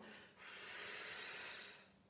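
A woman's long, steady exhalation through the mouth, lasting about a second and a half and starting about half a second in, breathed out while lifting the pelvis in a Pilates shoulder bridge.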